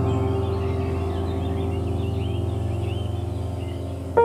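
Soft piano music holding a chord that slowly fades, with birds chirping lightly over it; the chirps die away in the second half.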